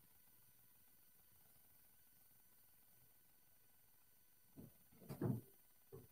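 Near silence, then a swing-away heat press being swung over and clamped shut: a few clunks about four and a half to five and a half seconds in, the loudest just after five seconds, and one more short knock at the very end.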